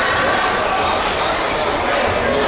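Echoing sports hall ambience between points: many overlapping voices of players and onlookers talking at once, with no single clear strike.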